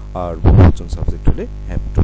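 Steady electrical mains hum under a man's voice, which sounds a drawn-out syllable starting about a quarter second in, followed by short clipped sounds.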